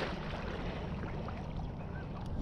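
Wind buffeting the microphone, a steady low rumble with no distinct events.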